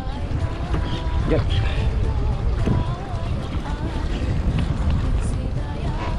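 Wind buffeting the microphone in a steady low rumble, with water moving around a kayak in choppy sea.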